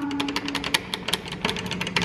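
Rapid, even ticking, about ten to twelve clicks a second, over a faint steady low hum.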